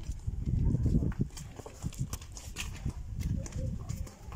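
Footsteps on a paved alley, irregular taps over a low, uneven rumble.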